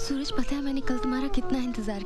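A person's voice, in short broken phrases, over sustained background music.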